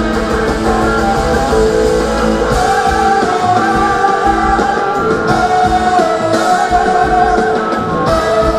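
Rock band playing live: an electric guitar leads with long, wavering sustained notes over two drum kits and the rest of the band.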